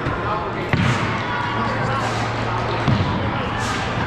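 Two dull thuds, about two seconds apart, over the steady chatter of people in a large hall.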